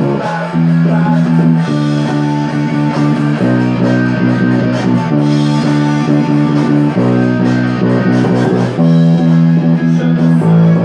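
Punk rock song with an electric bass guitar playing a riff of repeated notes on its low strings, over electric guitars. The chord shifts every second or two.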